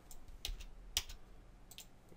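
Computer keyboard keystrokes: a handful of separate key clicks, the loudest about a second in, as selected text is deleted in a code editor.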